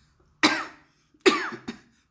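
A woman coughing twice, about a second apart, each cough a sharp burst that dies away quickly. The cough comes with the coronavirus infection that she says has left her with a cough and breathing trouble.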